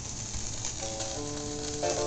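Vinyl record surface noise, a steady crackle and hiss from the stylus in the groove, then the record's music begins just under a second in with sustained chords over the crackle.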